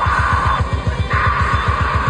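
Death metal band playing live, recorded through a camcorder microphone: rapid, even bass-drum beats under distorted electric guitars, with a held, screamed vocal that breaks off briefly about half a second in and picks up again just after a second.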